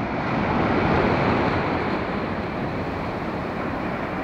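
Surf breaking and washing up the beach around the anglers' legs, a rush of water that swells about a second in and then slowly eases off.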